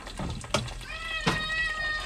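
A cat meowing: one long, fairly level meow that starts about a second in, with a few light clicks around it.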